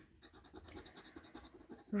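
A small metal scraping tool scratching the coating off a Lotto Paradiso scratch card: a faint, rapid, uneven scratching.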